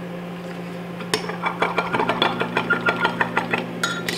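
Metal spoon stirring liquid plastisol in a glass measuring cup. From about a second in it clinks and scrapes against the glass several times a second.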